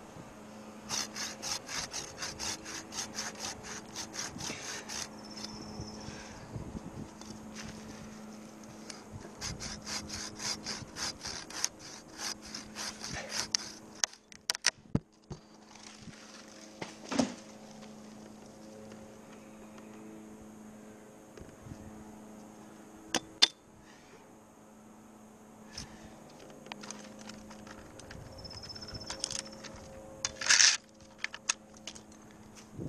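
Curved pruning handsaw cutting through an alder stem in two runs of quick, even back-and-forth strokes in the first half. Later come a few sharp knocks and clicks, with no sawing.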